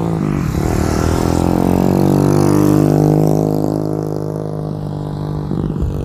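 Motorcycle engine running steadily, rising a little in pitch and loudness to about halfway, then easing off.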